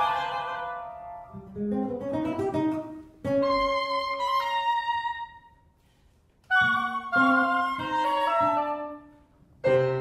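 Contemporary classical chamber quartet of flute, oboe, electric guitar and piano playing short phrases of struck notes that ring and fade. The music drops to a brief near-silent pause about six seconds in, then resumes.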